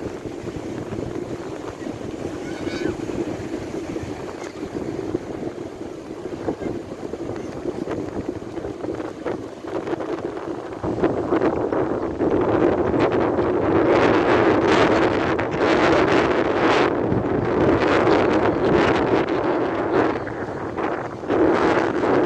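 Wind buffeting the microphone over the steady rush of ocean surf breaking on the beach. About halfway through the gusts get louder and come in irregular blasts.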